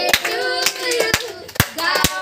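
Girls and women singing together and clapping in time, about two claps a second.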